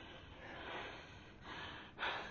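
A dying woman's faint, laboured breathing: two breathy gasps, one about half a second in and another near the end.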